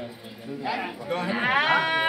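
Voices chattering, then about a second and a half in a high singing voice starts a long held note with a fast, wavering quaver, in the drawn-out style of Nepali thado bhaka folk singing.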